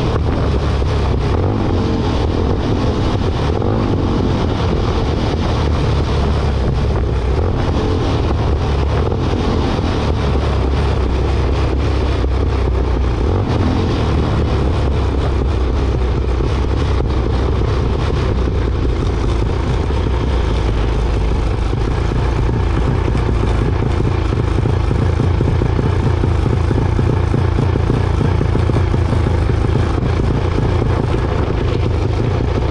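Junior dragster's single-cylinder engine running steadily at low revs as the car rolls slowly and slows down, heard from an onboard camera.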